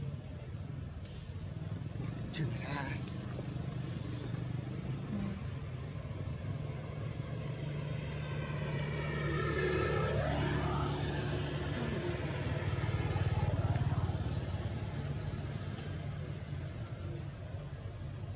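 Steady low hum of motor traffic, growing louder around ten seconds in and again a few seconds later. About ten seconds in, a short pitched call slides in pitch over the hum.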